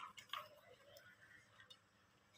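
Near silence: room tone with a few faint, short clicks in the first half second.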